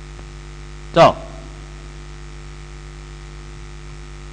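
Steady electrical mains hum on the recording, with one short, loud vocal sound from a man about a second in, falling in pitch.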